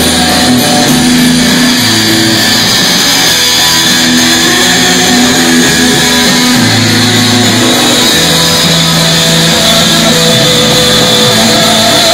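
Live rock band playing an instrumental passage, with no singing: electric guitar, electric bass holding notes that change every second or so, and drums, loud and steady.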